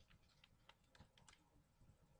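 Faint keystrokes on a computer keyboard: about half a dozen separate taps, most of them in the first second and a half.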